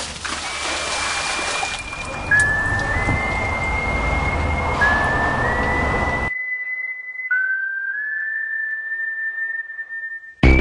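Background music with a single whistle-like melody of long held notes, each sliding up into pitch. A steady rushing noise plays under it and cuts off abruptly about six seconds in, leaving the melody alone.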